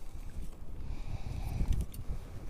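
Low, uneven rumble of wind buffeting the microphone, with a few faint ticks near the end.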